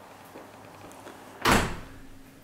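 A door shutting with a single thud about one and a half seconds in.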